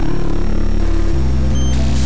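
Noise music: a loud, steady low drone with static hiss over it. The drone shifts to a deeper, fuller tone about a second in, and a short burst of hiss comes near the end.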